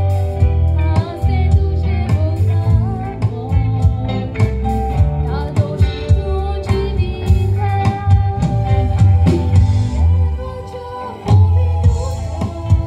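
A woman singing a toast song into a microphone over accompanying music with a strong, steady bass.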